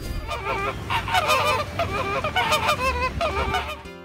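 A flock of flamingos calling, with many short honking calls overlapping throughout.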